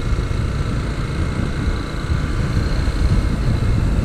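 A motorcycle being ridden at road speed: its engine running steadily under heavy wind noise on the camera microphone.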